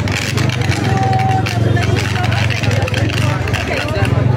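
Overhead power cable arcing at a street pole, giving a steady low electrical buzz with crackling as it throws sparks, under the chatter of a crowd.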